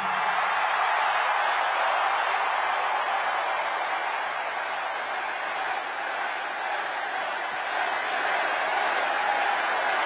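Large arena crowd cheering and applauding in a steady wash of noise that eases a little midway and swells again near the end.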